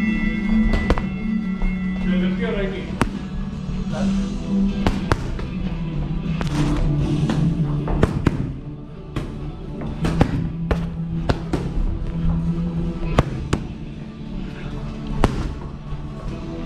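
Boxing gloves smacking into a coach's punch pads: about a dozen sharp hits at irregular intervals, several in quick pairs like one-two combinations. Background music plays throughout.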